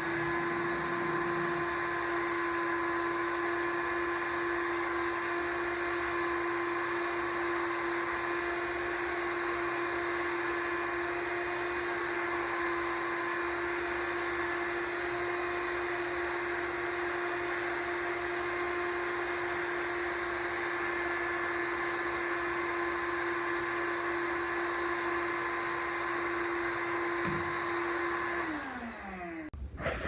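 Shop vac running steadily as it sucks up sawdust through a Dust Deputy cyclone separator tilted at about 45 degrees. Its whine rises as the motor comes up to speed at the start, holds level, and falls away as the motor is switched off and spins down about two seconds before the end.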